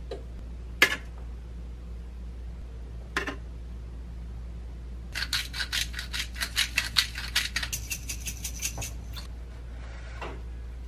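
Two single light clicks of kitchen tongs as tomato halves are set on the toast, then a hand pepper grinder being twisted: a rapid run of small clicks lasting about four seconds.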